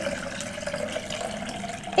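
Water pouring steadily from a plastic pitcher into a tall glass vase partly filled with chocolate milk.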